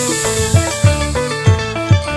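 Dangdut music: a repeating drum pattern of low strokes that drop in pitch, under a held melody line.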